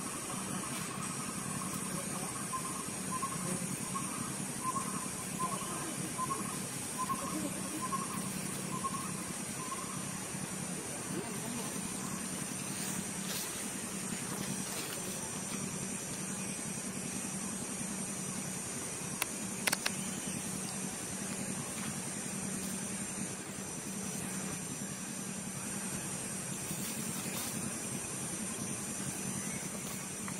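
Steady outdoor hiss and hum, with a run of about a dozen short, high chirps at an even pace, roughly one and a half a second, through the first ten seconds, and a couple of sharp clicks near the middle.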